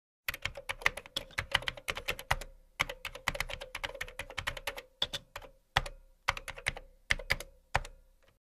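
Typing sound effect of keyboard keys being struck: quick runs of sharp key clicks broken by short pauses.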